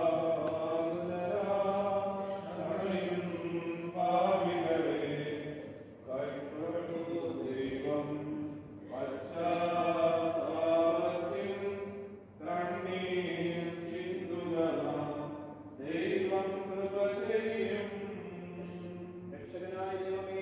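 Voices chanting a slow hymn in long held phrases of a few seconds each, with short breaks between.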